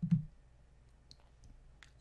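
A few computer mouse clicks picked up by the desk microphone: a louder one with a low thump right at the start, then fainter single clicks about a second in and near the end.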